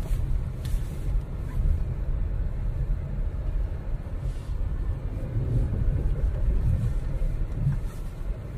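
Steady low rumble of a car driving slowly over a rough, frozen dirt road, heard from inside the cabin.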